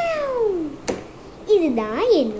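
High-pitched vocal calls. The first slides steadily down in pitch for nearly a second, there is a single sharp click, and then a second call dips and rises near the end.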